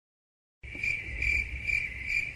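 Crickets chirping, a steady high trill pulsing a little over twice a second, starting about half a second in.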